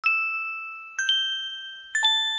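Background music opening with bell-like chime notes struck about once a second, each ringing on and slowly fading.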